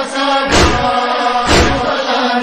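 A male reciter chanting a noha in a held, wavering voice, over an even rhythm of loud slaps about once a second: mourners' chest-beating (matam) keeping time with the lament.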